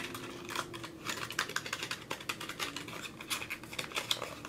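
Makeup packaging being handled and opened: a run of small irregular plastic clicks and taps, several a second.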